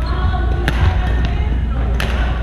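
Badminton racket striking a shuttlecock once, a sharp smack about two-thirds of a second in, with a fainter hit about a second later, amid sneaker squeaks on a wooden gym floor and chatter from other courts over a steady low rumble.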